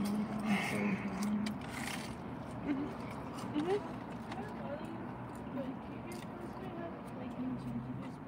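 A woman's voice drawn out on level, sung-sounding notes for the first second and a half, then faint, scattered talk.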